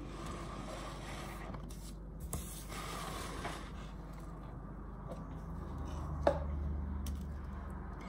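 Faint scrapes and light taps of fingers picking fruit crumbs off a stone worktop and pressing them onto a cake, over a low steady room hum.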